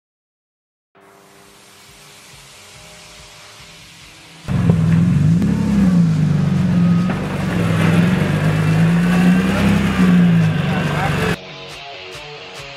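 Race car engine running, its revs rising and falling, starting suddenly about four and a half seconds in and cutting off abruptly near the end. Before it there is a quieter steady hum.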